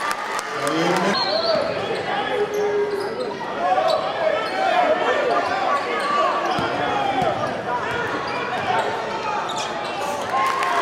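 Basketball being dribbled on a hardwood gym floor, with sneakers squeaking in short gliding chirps and a crowd's voices and shouts echoing in the gym.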